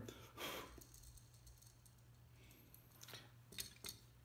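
Near silence: a soft breath about half a second in, then a few faint clicks near the end as small plastic building-toy pieces are handled.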